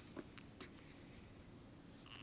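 Near silence: room tone, with a few faint clicks in the first second.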